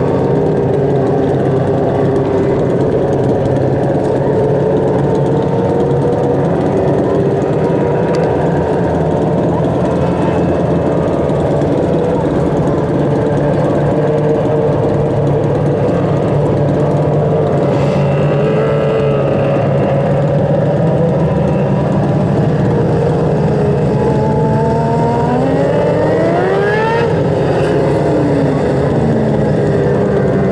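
Engines of several small winged sprint cars running together in a steady, layered drone on a dirt oval. Near the end one engine's pitch climbs and falls away.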